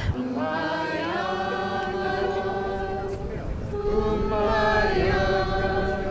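Rally crowd singing together in long held notes: one sustained phrase, a short break about three seconds in, then a second held phrase a little higher in pitch.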